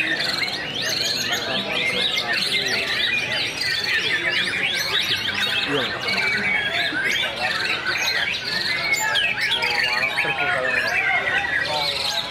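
White-rumped shamas (murai batu) singing in cages, many birds' quick, varied song phrases overlapping without a break.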